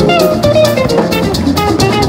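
Live band jam: electric guitar, accordion, electric bass and drum kit playing together over a steady drum beat, with a melody line stepping downward in the first second.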